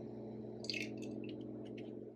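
Coconut oil pouring from a glass bottle into a plastic blender cup: a few short, irregular trickling and splashing sounds over a steady low hum.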